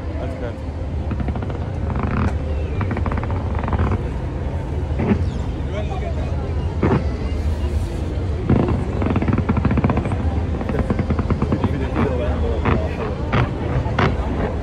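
Fireworks going off as a set of sharp bangs and cracks over a steady low rumble, with crowd voices throughout; the bangs come singly around the middle and several in quick succession near the end.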